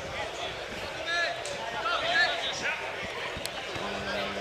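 Distant voices calling out across an open football pitch, faint and scattered over steady outdoor background noise, with one short sharp knock about three and a half seconds in.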